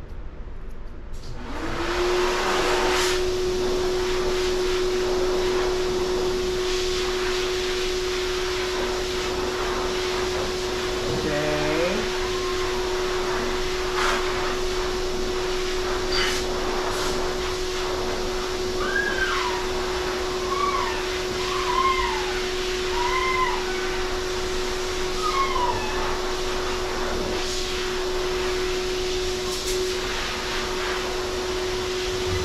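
A blower-type electric motor starts about a second and a half in and runs steadily with a constant hum. In the second half, a dog gives a series of short, high, falling whines over it.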